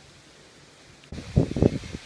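Wind buffeting the microphone outdoors: quiet at first, then, about a second in, a gusty low rumble that rises and falls unevenly.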